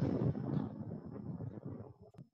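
Low rumbling microphone noise on a video call, fading over two seconds and cutting off abruptly at the end.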